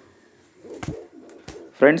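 Homing pigeon cooing softly and low, starting about half a second in, with two short sharp knocks.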